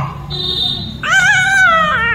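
A baby's high-pitched, wavering whining cry, starting about a second in and dipping in pitch near the end, after a short high steady tone.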